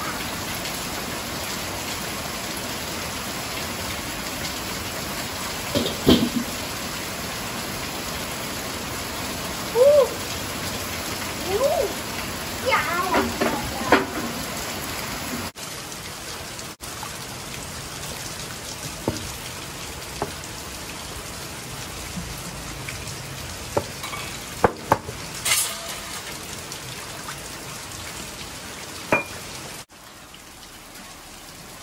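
Steady rain falling, with a few short shouts about ten to fourteen seconds in. Then, about halfway through, a quieter stretch of raw intestines being washed by hand in a wok of water, with scattered clicks and knocks of a metal utensil against the wok.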